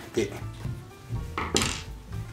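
Screwdriver loosening the screw in a DOD Multi Kitchen Table's plastic leg joint, with small metallic clinks and a short scraping rattle about one and a half seconds in, over background music.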